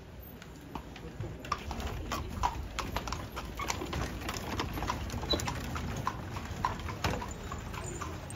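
A carriage horse's hooves clip-clopping on the street as it walks off pulling the carriage, an uneven run of sharp clops starting about a second and a half in.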